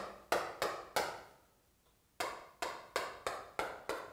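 Chalk clicking against a blackboard as short strokes are written. There is a quick run of three taps, a short pause, then another run of about six taps, roughly three a second.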